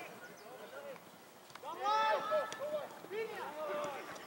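Players' voices shouting calls across a soccer field: a quiet first second, then a burst of raised shouts about two seconds in that trail off near the end.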